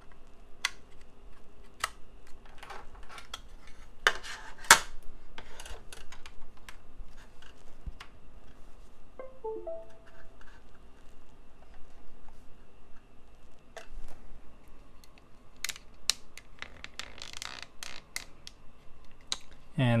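Plastic-and-metal handling clicks and knocks as a 2.5-inch SATA SSD is pushed onto a SATA-to-USB adapter's connector and set down, with a brief chime of a few short tones about halfway through. The solid-state drive itself makes no spin-up sound.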